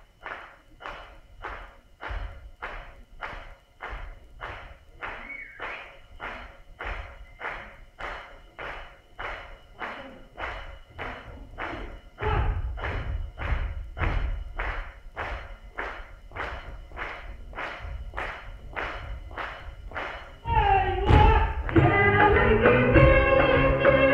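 Folk dancers beating out a steady rhythm of sharp strikes, about two and a half a second, on a stage. From about twelve seconds in, heavier thuds from the dancers landing jumps join the beat. Near the end, loud music with singing comes in.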